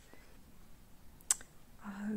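A single sharp click about a second and a half in, with quiet in between.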